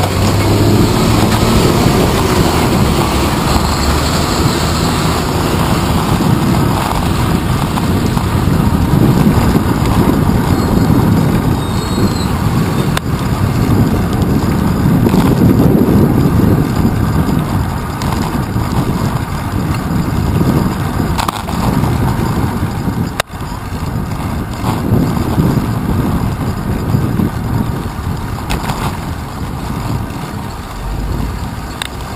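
Rushing wind and road rumble on a handlebar-mounted action camera's microphone while a bicycle rides through city traffic. A single sharp click comes about three-quarters of the way through.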